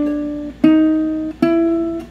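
Ukulele single notes plucked one at a time in a fret-by-fret finger exercise: three notes about 0.7 s apart, each ringing until the next, climbing one small step in pitch each time as the fretting finger moves up a fret.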